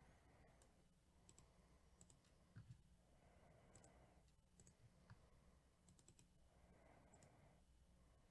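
Near silence: faint, scattered clicks of a computer mouse and keyboard over a low room hum.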